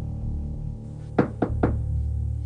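Three quick knocks on a door, about a second in, over a low, steady music underscore.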